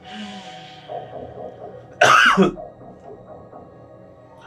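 A man's single short, loud laugh about two seconds in, falling in pitch, over faint background sound from the show.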